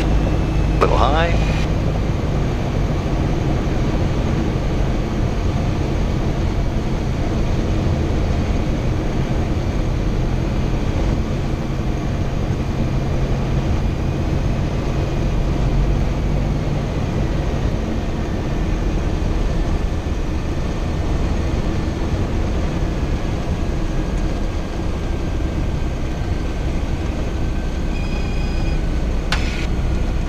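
Cessna 177 Cardinal's piston engine and propeller, heard from inside the cabin on short final and touchdown: a steady drone that weakens after about seventeen seconds as power comes off for the landing. A faint thin tone slowly falls in pitch in the second half.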